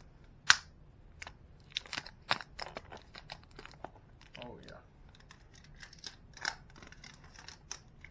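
Plastic iced-coffee bottle handled close to the microphone, with irregular crackles and sharp clicks of plastic as its cap is worked. One click about half a second in is much louder than the rest.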